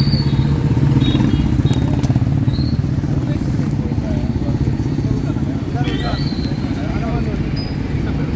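A motor vehicle engine running steadily close by, with a low, even rumble, and faint voices under it.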